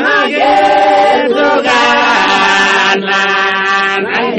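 Voices singing a slow song in long held notes, with short breaks between the phrases.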